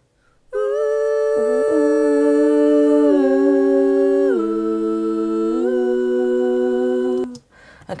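Two recorded harmony vocal tracks by a woman played back on their own, with no backing: long held notes in two-part harmony. The pitch steps down about three seconds in and again past four seconds, rises near six seconds, and the notes stop just after seven seconds.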